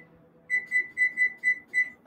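Electric range's control panel beeping, a run of six short, high electronic beeps in quick succession as its keys are pressed to set the oven for a seven-minute bake.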